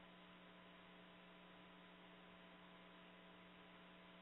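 Near silence: a faint, steady electrical hum of a few fixed tones over light hiss, as on a call-in audio line during a pause.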